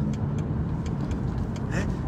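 Car driving along a road, heard from inside the cabin: a steady low rumble of engine and tyre noise.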